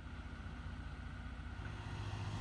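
Engine running as a truck-mounted forklift drives off the back of a flatbed lumber delivery truck. The sound is a steady low engine note that grows slightly louder.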